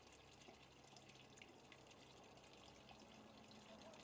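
Near silence: a faint steady background hiss with a low hum.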